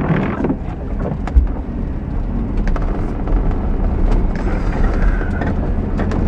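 Road and engine noise inside the cabin of a moving SUV: a steady low rumble with scattered small rattles and clicks, and a louder thump about a second and a half in.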